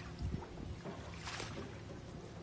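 An oar slapping and splashing in the water, with a low thud about a quarter second in and a short splash about a second and a half in.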